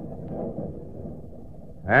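A low, steady rumble with no tones or music left in it.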